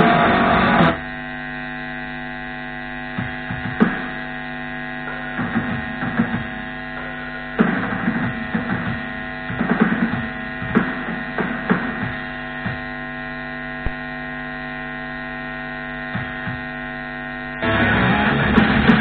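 Guitar playing breaks off about a second in, leaving a steady electrical mains hum from an amplified guitar setup. Scattered faint handling and string noises come over the hum, and the playing starts again just before the end.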